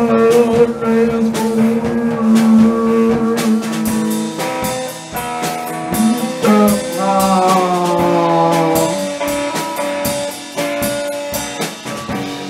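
Noise-pop band playing live: drum kit with guitar and singing over long held tones, which slide downward in pitch about seven seconds in.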